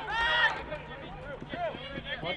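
Voices shouting on a lacrosse field: one loud shout right at the start, then fainter calls from farther off.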